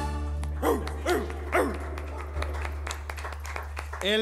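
Three short barks, each sliding steeply down in pitch, like a dog barking, over a steady low hum.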